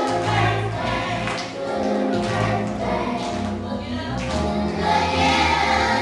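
Music: a group of voices singing a song together over instrumental backing with a bass line.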